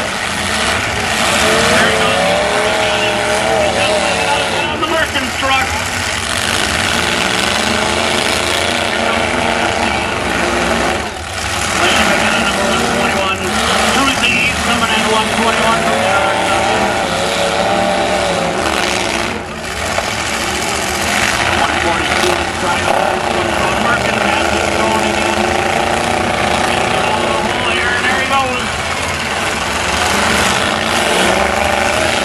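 Several full-size pickup trucks' engines revving hard and unevenly, their pitch climbing and dropping again and again as they push against each other.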